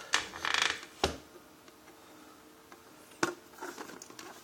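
Clear plastic display case being handled and turned over: a rustling scrape in the first second, then a sharp knock about a second in and another a little past three seconds.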